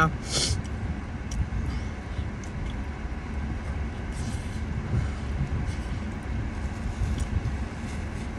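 Steady low rumble inside a car's cabin with a faint hiss over it, broken by a few small clicks from someone chewing food.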